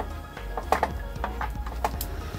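A screwdriver driving small screws into the sheet-metal cover plate of a car touchscreen head unit, with about five light, irregular metallic clicks.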